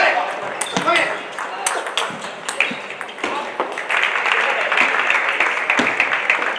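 Table tennis rally: quick, sharp clicks of the celluloid ball off the bats and the table, with voices calling out. About two-thirds of the way in, a steady crowd noise rises as the point ends.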